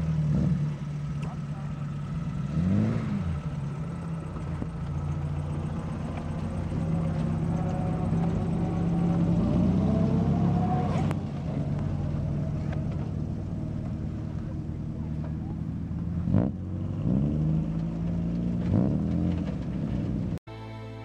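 Vintage Alvis car engines running at idle, with short revs that rise and fall in pitch about three seconds in, around ten seconds, and twice near the end as the cars move off.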